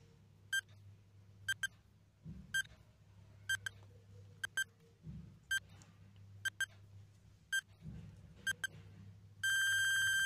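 Countdown timer sound effect: short, high electronic beeps about once a second, some in quick pairs, ending in one long continuous beep about nine and a half seconds in as the timer reaches zero, signalling time is up.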